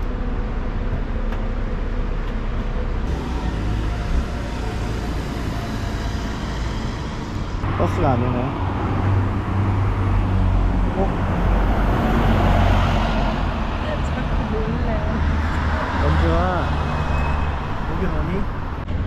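Road traffic on a city street: motor vehicles running and passing, with a steady low engine rumble that strengthens from about eight seconds in.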